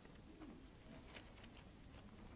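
Near silence: faint room tone with one soft click about a second in.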